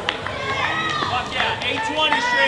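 Several people shouting and cheering, their loud calls overlapping.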